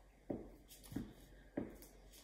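Glue stick rubbed across paper in short strokes: three faint, brief strokes about two thirds of a second apart, each with a slight squeak.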